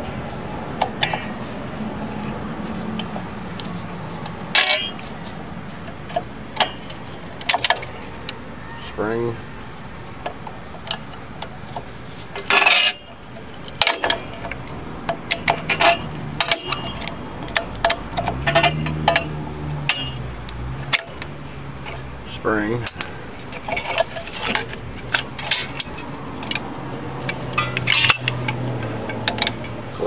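Steel drum-brake hardware of a 1995 Jeep Wrangler being worked by hand: return springs, shoe retaining clips and adjuster parts clicking, clinking and snapping against the shoes and backing plate in a long string of irregular sharp metallic clicks, some with a brief ring.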